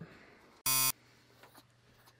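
A single short electronic beep, a flat buzzy tone lasting about a quarter of a second, a little under a second in, followed by a faint steady hum.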